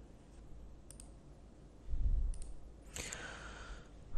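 A few faint, sharp computer mouse clicks over quiet room noise, with a low bump about two seconds in and a soft breathy hiss near the end.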